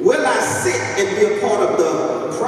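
A man preaching loudly into a handheld microphone, his voice amplified through the hall's PA speakers, starting again sharply after a brief lull.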